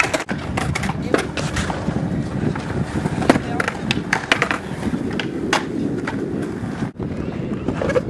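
Skateboard wheels rolling on concrete with repeated sharp clacks of boards popping and landing, over a crowd's voices. The sound drops out for an instant near the end.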